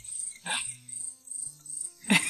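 An insect, cricket-like, chirping in a steady high-pitched pulse about three times a second, over soft low background music notes. A short noisy burst comes about half a second in.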